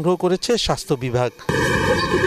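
News narration until about a second and a half in, then an abrupt switch to loud outdoor street sound: a Toyota jeep driving past with a steady low rumble.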